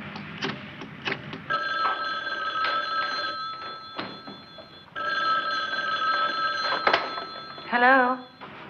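A telephone bell ringing twice, each ring about two seconds long with a short pause between them. A few sharp clicks come just before the first ring.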